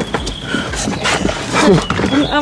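Dog whimpering in short, rising and falling cries, with a longer falling whine near the end.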